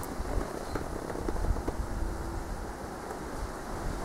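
Steady low background rumble with a faint haze of noise and a few soft ticks.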